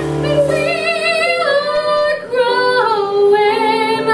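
A woman singing live with piano accompaniment, holding long notes with vibrato in a phrase that steps down in pitch.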